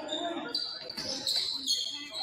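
A basketball being dribbled on a hardwood gym floor, with high-pitched sneaker squeaks and players' voices in a large, echoing hall.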